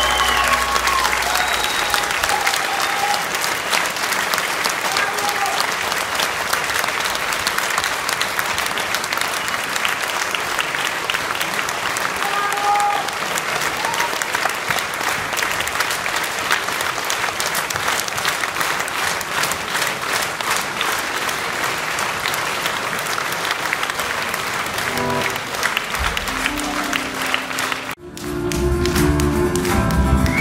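Concert audience applauding steadily in a hall as the band's last notes die away, with a few faint instrument notes over the clapping. Near the end the sound cuts abruptly to the band starting the next song.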